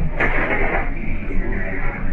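Muffled, noisy shop ambience picked up by a security camera's microphone, with a short sharp noise about a quarter of a second in.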